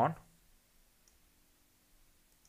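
The tail of a spoken word, then near silence: room tone with a faint click about a second in.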